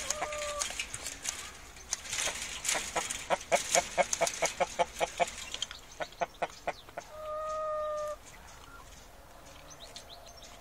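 Chickens clucking in a quick run of short clucks, about six a second, then one steady, held call lasting about a second.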